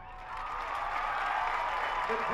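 Crowd in the stadium stands applauding and cheering, building up shortly after the start.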